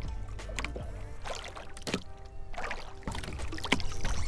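Choppy lake water lapping against a small fishing boat's hull, with a steady low wind rumble on the microphone and a few sharp knocks. Faint background music runs underneath.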